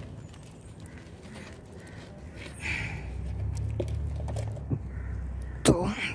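A flexible black plastic nursery pot being squeezed and worked by hand to loosen a tightly packed root ball, with scattered small clicks and crackles of the plastic. A low rumble joins about halfway through, and a sharp loud sound comes just before the end.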